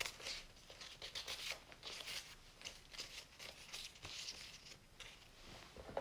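Paper flashcards handled and swapped, faint short irregular rustles and scrapes of card rubbing on card.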